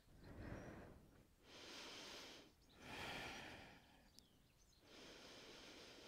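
Faint breathing: about four slow breaths, each a soft rush of air lasting about a second, from a person holding downward-facing dog.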